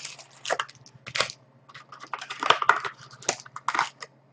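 Foil trading-card packs crinkling and rustling as they are pulled out of a cardboard hobby box and handled: a run of short, irregular crinkles.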